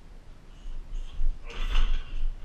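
Short high squeaks and creaks, then a louder rustling scuff about one and a half seconds in.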